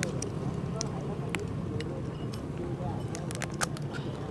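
Chopsticks and spoons clicking against ceramic bowls and plates in short, scattered clicks, over a steady low hum of street traffic and faint background chatter.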